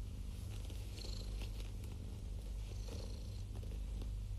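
Domestic cat purring, a steady low rumble.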